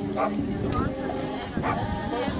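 A dog barking twice, short and sharp, over a steady background of crowd chatter.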